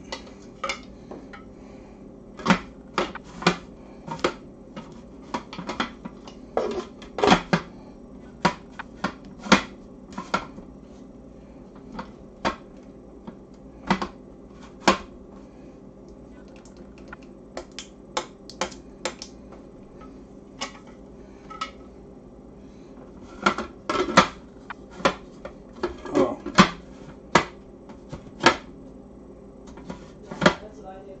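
Sharp, irregular plastic clicks and knocks from a food processor's bowl and lid being handled and fitted, coming in busy clusters near the start and again near the end, over a steady low hum.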